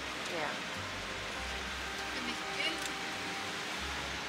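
Steady hiss of a food shop's background noise, with a low hum underneath and faint distant voices now and then.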